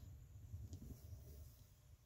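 Near silence: faint low room rumble, with one faint tick at about 0.7 s.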